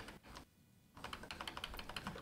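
Keystrokes on a computer keyboard while lines of code are being indented: a few faint key clicks at the start, then a quick run of them in the second half.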